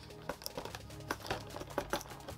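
Cardboard advent calendar door being torn and picked open by hand, a few short crinkles and scrapes over soft background music.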